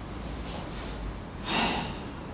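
A karateka's forceful breaths exhaled with the techniques of Goju-Ryu Shisochin kata: a faint hiss about half a second in, then a louder, sharp exhalation near the end.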